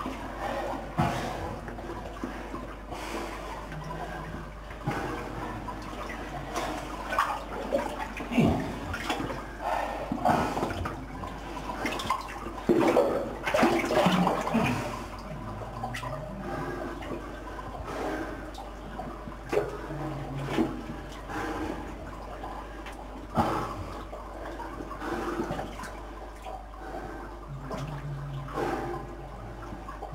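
Water sloshing and splashing as a person wades through a flooded brick-lined mine tunnel, with irregular splashes and knocks throughout.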